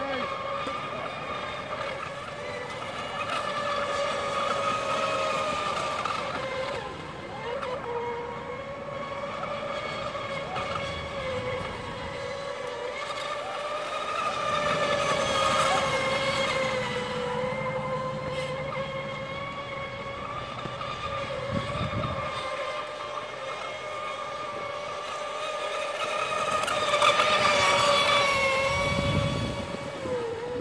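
Radio-controlled speedboat running fast on the water: a steady high-pitched motor whine that wavers a little in pitch. It grows louder twice, about halfway through and again near the end, with a spray-like hiss each time.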